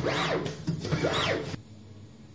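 Servo drive of a roll-to-roll screen printing unit running the squeegee back and forth at speed, each stroke a whine that rises and falls in pitch, about two a second. It cuts off about one and a half seconds in, leaving a faint hum.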